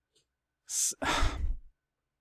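A man sighing into the microphone: a short hissy intake of breath about two-thirds of a second in, then a longer breath out lasting most of a second.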